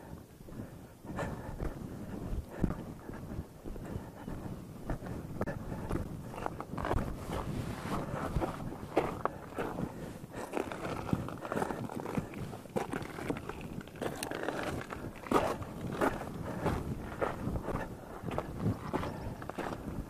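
A hiker's footsteps on granite rock, an irregular run of steps starting about a second in as they climb up among the boulders.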